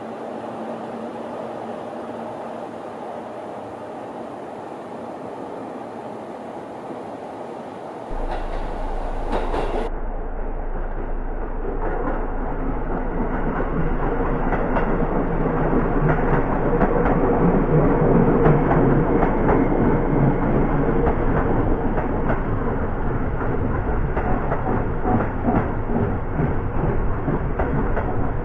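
Electric commuter train passing close by. Its rumble builds, is loudest about two-thirds of the way in, and runs on with wheels clacking over the rail joints. Before a cut about a third of the way in there is only a steadier, fainter background noise.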